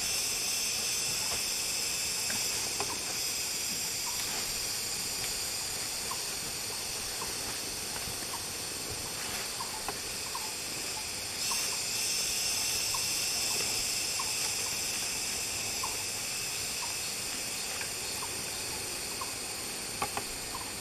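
Cicadas droning steadily at a high pitch, growing louder a little past halfway, while a bird gives short, clipped call notes about once a second.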